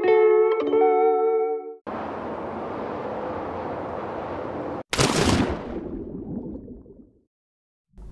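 A short plucked-string music sting of a few notes, followed by about three seconds of steady rushing noise, then a sudden loud whoosh that falls away and fades out over about two seconds: comic sound effects added in editing.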